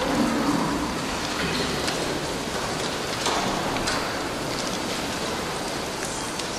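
Steady hiss of room noise in a large, reverberant church hall, with scattered small clicks and rustles from the seated audience.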